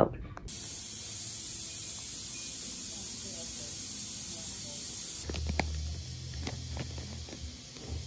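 Steady high-pitched hiss. About five seconds in it gives way to a quieter low hum with a few faint clicks.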